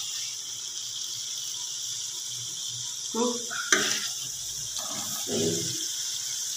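Karela chicken sizzling steadily in a metal pot as it is stirred, with a metal utensil scraping in the masala and one sharp clink against the pot about halfway through.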